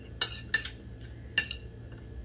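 Metal spoon scraping and clinking against a plate three times as it gathers up food: short, sharp contacts.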